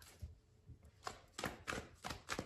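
Tarot cards being handled off camera: a faint run of about half a dozen short, dry taps and clicks at uneven spacing as cards are pulled from the deck and laid down.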